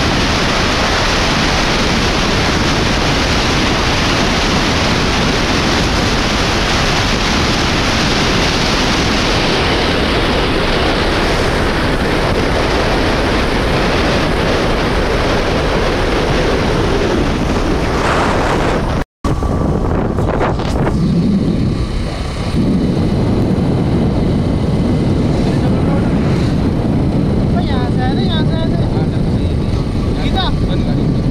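Heavy wind rush on the microphone from a moving motorcycle, with the bike's engine running underneath. About two-thirds of the way through the sound cuts out briefly; after that the wind noise eases and a lower engine and road rumble is left.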